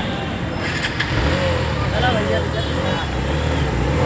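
Road traffic: a motor vehicle's engine runs past close by, getting louder from about a second in, with people's voices talking over it.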